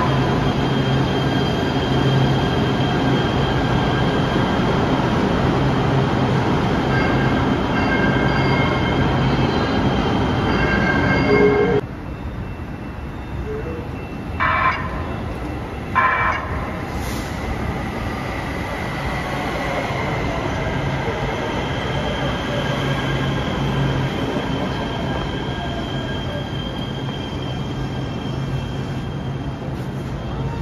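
LA Metro Kinkisharyo P3010 light rail trains. First one hums and whines steadily with its motors at an underground platform. Then another approaches a station with two short horn blasts and its motor whine falls in pitch as it brakes to a stop.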